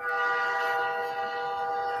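A train horn sounding one steady chord of several notes for about two seconds, starting suddenly.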